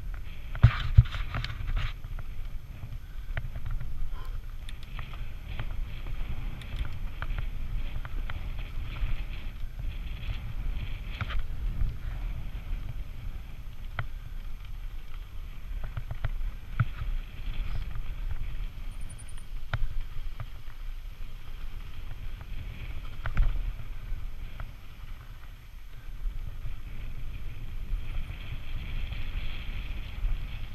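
Santa Cruz Nomad full-suspension mountain bike descending a dry dirt singletrack: tyre noise on the dirt with frequent sharp clicks and rattles from the bike over bumps, the loudest knocks about a second in. Under it a steady low rumble of wind on the helmet camera's microphone.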